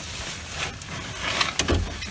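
Handling noise from a handheld camera being moved about: rustling and scraping, with a couple of light knocks and a low thump near the end.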